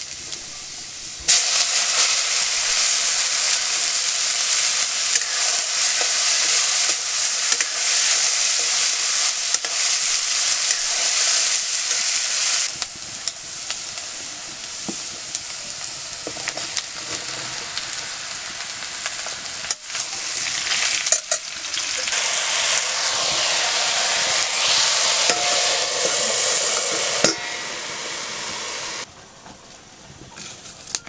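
Green soybeans and vegetables frying in hot oil in a metal wok as they are stirred: a loud hiss of sizzling starts suddenly about a second in, eases off around the middle, swells again, and drops away near the end.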